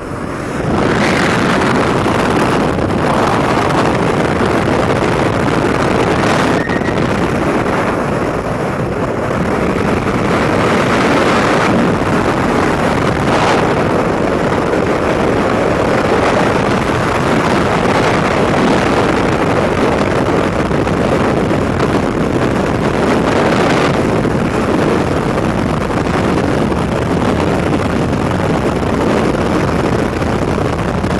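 Loud, steady rush of freefall wind blasting the camera microphone during a skydive, rising sharply within the first second as the camera flyer falls away from the aircraft.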